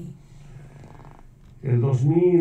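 A person speaking in a translated interview. The voice stops for about a second and a half, leaving a faint low murmur, then starts again loudly near the end.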